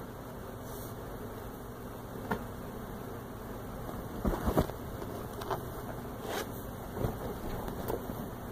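Steady low hum with a few soft knocks and rustles scattered through it, the loudest cluster about halfway through.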